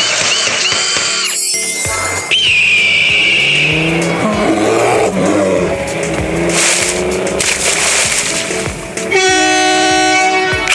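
Animated intro soundtrack: music mixed with cartoon vehicle sound effects, with a long high squeal about two seconds in and rising and falling revs in the middle.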